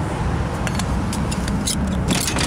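A steady low rumble with a few light metallic clicks spread through it, as the entry door handle of a small motorhome is worked.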